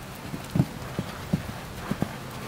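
Hoofbeats of a paint horse cantering on arena sand: a run of dull thuds in the stride's rhythm, the loudest about half a second in.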